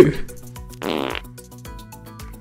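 A comic fart sound effect, one short buzzy blast of about half a second, about a second in, over upbeat background music.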